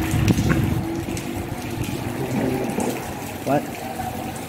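Light drizzle falling, a steady wet hiss, with voices briefly in the background.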